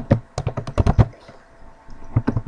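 Computer keyboard and mouse clicks, about six quick clicks in the first second.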